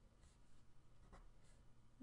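Faint scratching of a pen writing on paper: a few short strokes, with a soft tap about a second in.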